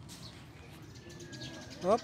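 Faint bird chirps over a quiet background hiss, with a few thin high-pitched calls near the start. A short spoken syllable comes at the very end.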